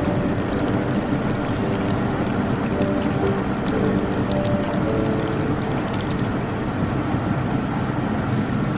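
Whirlpool bath jets running: a steady rush of churning, bubbling water over the low hum of the pump, with a fine crackle of bursting bubbles that thins out near the end.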